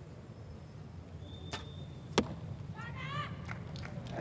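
Compound bow being shot: a sharp click as the arrow is released, then a louder sharp crack about two-thirds of a second later. A faint voice follows near the end.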